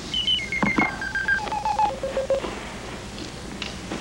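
Electronic telephone dialing tones: a run of beeps stepping down in pitch, from high to low over about two and a half seconds, with a click near the start as the call is placed.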